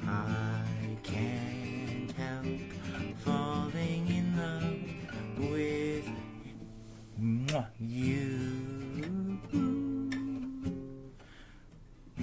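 Classical nylon-string guitar strummed slowly under a man singing long held notes of a slow ballad; the playing grows quieter and rings out near the end.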